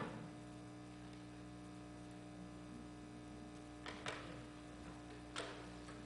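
Steady electrical mains hum, a low buzz held at a few fixed pitches, with a few faint sharp clicks about four and five and a half seconds in.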